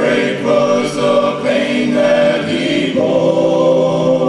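Male gospel vocal group singing a slow song in close harmony, several voices holding chords that change about once a second, ending on one long held chord.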